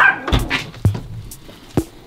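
A dog giving two short yips at the start, about a third of a second apart, followed by a few sharp clicks.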